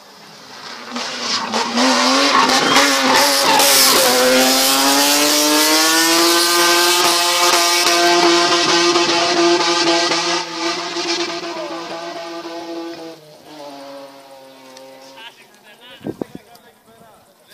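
Racing car driven hard through a hairpin, its engine revving up and held at high revs with tyre squeal, then pulling away and fading over the last few seconds.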